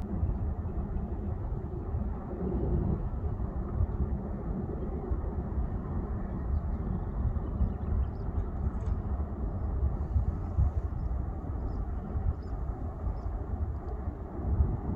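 Low, choppy rumble of wind buffeting the microphone outdoors, with no bleating from the sheep.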